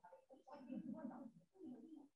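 Faint, indistinct voices talking in a small room.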